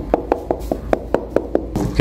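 Knuckles rapping rapidly on a wall, about five sharp knocks a second, stopping shortly before the end: the wall is being sounded for a hollow space behind it.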